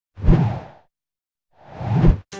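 Two whoosh transition sound effects. The first hits suddenly just after the start and fades away within about half a second. The second swells up near the end and cuts off sharply.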